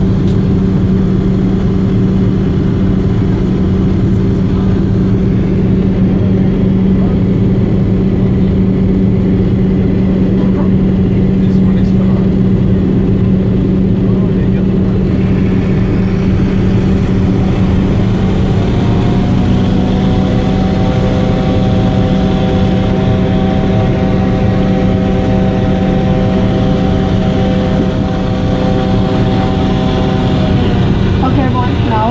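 Hovercraft engines and fans heard from inside the passenger cabin: a loud, steady drone with a deep hum. About two-thirds of the way through, a higher whine rises and then holds steady.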